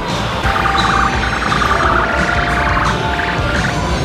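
Music with long held electronic tones that change pitch about every second.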